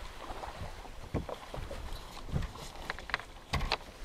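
Wind rumbling on the microphone, with a few sharp knocks and clatter from a landing net and fishing gear being handled on a bass boat's deck. The loudest pair of knocks comes near the end.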